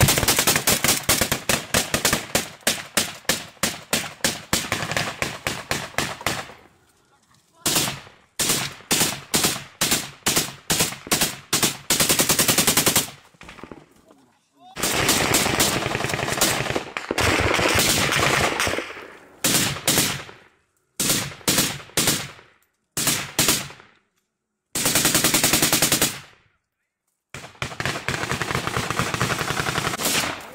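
Automatic rifle fire at close range: a long run of rapid shots, then strings of shots and bursts, broken several times by a second or so of silence.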